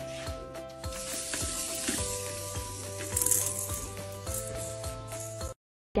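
Background music with steady held notes and a few faint clicks, cutting out suddenly for a moment near the end.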